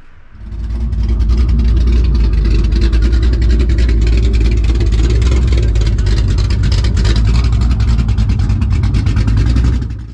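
Ford FG Falcon GT's V8 engine running, loud and steady with a deep note, fading in within the first second.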